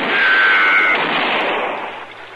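Gunfire sound effect in an old radio drama recording: a sudden loud shot that rings out and dies away over about two seconds, cut off above the narrow radio band. It is fired at the marshal, who has not yet shot back.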